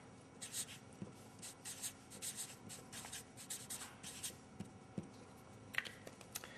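Marker pen writing on paper: a quick run of short, high scratching strokes as letters are drawn, followed by a few light taps near the end.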